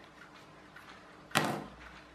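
One sharp knock about a second and a half in, with a short decay, as hard toys are handled on a tabletop. Before it there is only faint room tone.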